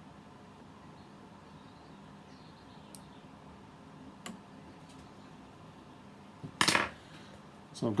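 Small model parts handled on a workbench: a couple of faint light clicks, then, about six and a half seconds in, one short, much louder clatter as a small flat hand tool is picked up.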